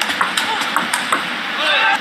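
Table tennis ball clicking sharply off the bats and the table in a quick rally, four or so knocks in the first second, over steady arena background noise. A short voice comes in near the end.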